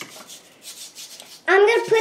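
Blue plastic digging tool scraping and chipping at the crumbled block of a Diamond Dig It excavation kit: a quick run of short, irregular rasping strokes. A child starts talking about one and a half seconds in.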